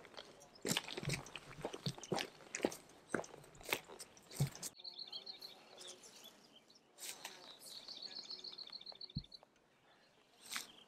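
Footsteps crunching and snapping through dry sticks and brush on a steep slope. After that, a high, rapid chirping trill is heard in two runs, with a single low thump near the end.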